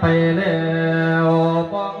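Thai lae, a Buddhist funeral recitation sung by a male voice, holding one long, steady note for about a second and a half before moving on.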